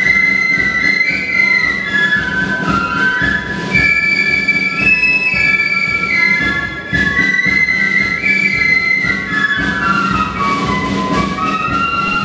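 A flute band playing a melody on flutes in several harmony parts, with drums keeping time underneath.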